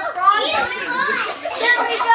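Young children's voices babbling and calling out without clear words, high-pitched and sliding up and down in pitch.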